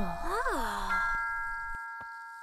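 Cartoon sound effects: a pitch glides up and then down, and about a second in a bright, bell-like chime sounds and rings on, slowly fading.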